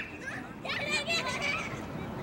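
Children's voices shouting and calling out during a running game, starting about half a second in.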